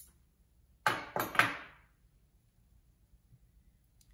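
Three quick knocks in close succession about a second in, each dying away briefly: the bonsai's root ball and the scissors being set down on a wooden board.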